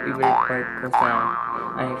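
Background music with a repeated rising boing-like slide, about three in two seconds, the last one levelling off into a held note.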